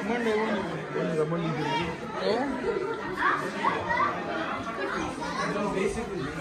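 Background chatter: several voices talking over one another in a room, none standing out clearly.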